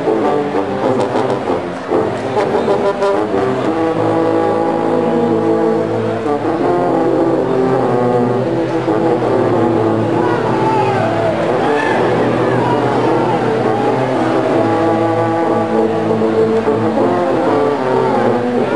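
A marching band's sousaphone section playing loud held notes together, the chords stepping to a new pitch every second or so.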